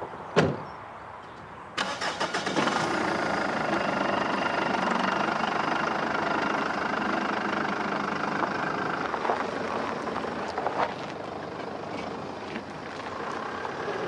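A single thump like a car door shutting, then an SUV's engine starts about two seconds in and runs steadily as the vehicle pulls away, easing off near the end.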